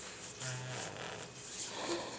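Quiet rustling of a pop-up tent's fabric floor as a baby crawls on it, with a brief faint voiced sound about half a second in.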